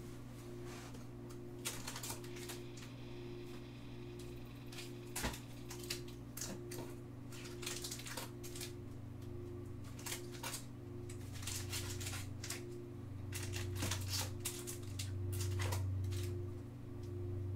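Irregular light clicks of typing on a computer keyboard, over a steady low electrical hum.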